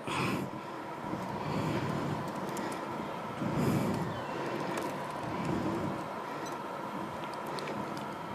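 Room tone of a hall through the talk's microphone: a steady low rumble with a thin steady hum, and scattered soft laptop keyboard clicks as a command is typed.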